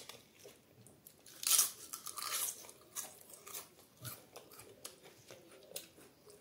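Crisp fried papad crackling and crunching as it is broken up by hand over a steel plate. The loudest run of crackles comes about a second and a half in, followed by scattered smaller crunches.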